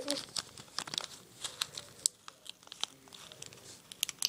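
Plastic food packaging crinkling in irregular, scattered crackles as it is handled.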